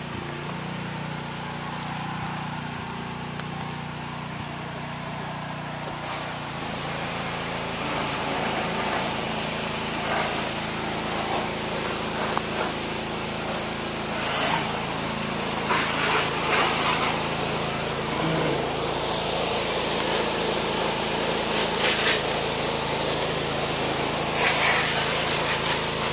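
Small gasoline engine of a pressure washer running steadily. About six seconds in, a loud steady hiss joins it and stays, with a few brief louder surges.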